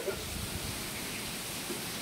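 Steady low rumble and faint hiss of background noise, with no distinct event and no speech.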